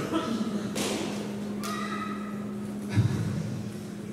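Low voices and small handling noises between songs, over a steady low hum, with a single thump about three seconds in.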